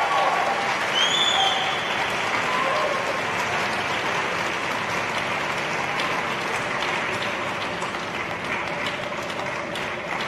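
Audience applauding steadily after a figure skating program, slowly tapering toward the end.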